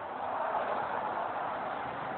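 Steady rush of road traffic from a fairly busy street, an even wash of noise with no clear engine tone standing out.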